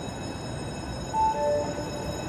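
Houston METRORail Red Line light-rail train near the platform: steady running noise, with a brief higher tone that drops to a lower one a little past a second in.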